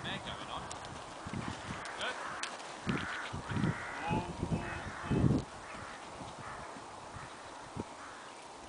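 Hoofbeats of a horse cantering on an arena surface. They are loudest from about three to five and a half seconds in, as the horse passes close by.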